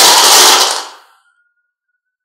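A cupful of marbles clattering against each other and the cup as it is shaken, a dense rattle lasting under a second that dies away.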